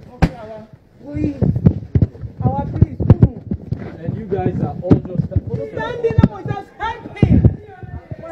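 Several people talking and shouting over one another in a heated argument, with sharp knocks and thumps mixed in.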